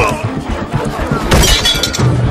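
Film fight sound effects over the background score: a hit at the start, then a loud shattering crash with a bright ring from about a second and a half in.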